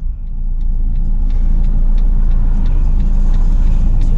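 Steady low hum of a stationary car's idling engine heard inside the cabin, with faint, even ticking of the hazard-light flasher relay about three times a second.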